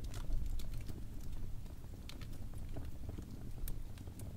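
Wood fire crackling in a fireplace: irregular sharp pops and snaps over a low, steady rumble of burning, with a stronger pop right at the start.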